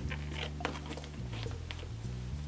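Soft background music with low, held notes, under faint rustling and small ticks as a phone is slipped into a slip pocket of a leather Coach Rogue 25 handbag.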